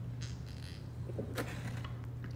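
Faint sipping and swallowing from a soda can, with a short soft click about one and a half seconds in, over a low steady hum.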